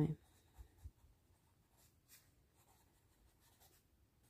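Pen writing on a paper workbook page: faint, short scratching strokes that come and go as a word is written out.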